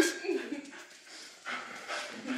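Small long-haired dog whining and whimpering in short, fairly quiet bursts as it jumps up at people.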